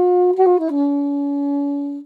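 Alto saxophone playing a sixteenth-note figure in the long-quick practice rhythm: a held note, three quick notes about half a second in, then a long lower held note. This is the exercise of holding the first note and rushing the rest, used to clean up fast sixteenth notes.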